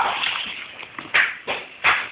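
A frightened stray tabby cat being grabbed and bundled into a blue plastic carrier: scuffling and handling noise with three short, sharp hiss-like bursts, one at the start, one about a second in and one near the end.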